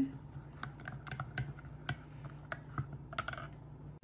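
A spoon stirring a mix of collagen powder, hemp seed oil and warm water in a white ceramic cup, clinking against the cup's sides in a string of light, irregular clicks.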